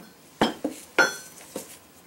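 Steel hammer head knocking against a steel railroad-rail anvil: two sharp metallic knocks about half a second apart, each followed by a lighter tap, the second ringing briefly.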